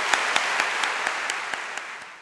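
Audience applauding, the clapping easing off toward the end.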